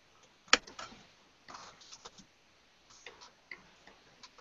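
Scattered clicks of a computer mouse and keyboard: one sharp click about half a second in, then lighter clicks in small groups.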